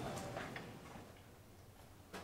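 Quiet room tone in a lecture hall with a few faint ticks in the first half second.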